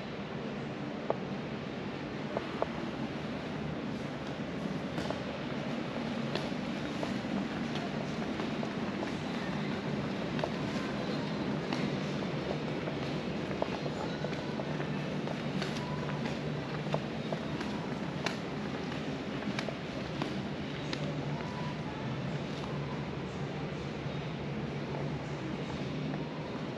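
Footsteps on a concrete floor, heard as scattered faint clicks over a steady hum of room air handling.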